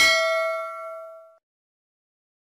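Notification-bell "ding" sound effect of a subscribe-button animation: one struck chime with several ringing tones that fades out within about a second and a half.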